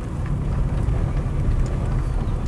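Steady low rumble of a car driving slowly, heard from inside the cabin.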